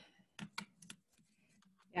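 Faint typing on a computer keyboard: a few quick keystrokes in the first second, then a pause.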